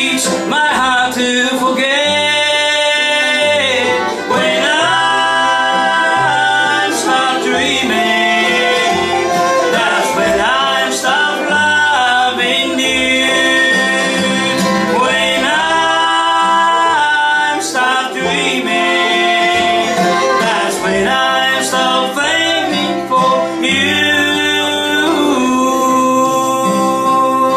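Live bluegrass band playing an instrumental break, with bowed fiddle, banjo, acoustic guitar and upright bass; held melody notes slide up and down in pitch throughout.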